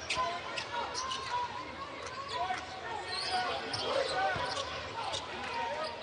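A basketball bounced several times on a hardwood court, sharp single bounces at uneven intervals, as a player dribbles at the free-throw line. Arena crowd voices chatter underneath.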